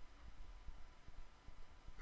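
Quiet room tone: a faint, steady hiss with no distinct event.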